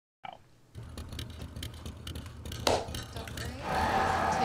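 Silence, then the mixed room sound of several reactors' recordings laid together: a low hum with scattered small clicks and one sharp click about two-thirds of the way in. It grows louder near the end as voices or show audio come in.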